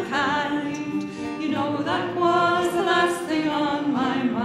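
Women's voices singing a folk song together in long held notes with vibrato, over a strummed acoustic guitar.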